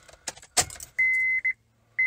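Car keys jangling and clicking into the ignition of a 2010 Honda Pilot, then the car's dashboard warning chime as the ignition is switched on: two high, steady beeps about a second apart, with a faint low hum underneath.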